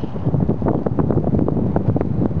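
Wind buffeting the camera microphone: a loud, steady low rumble with irregular short pops.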